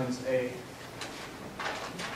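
Dry-erase marker writing on a whiteboard, with a scratchy stroke near the end. A voice is heard briefly at the start.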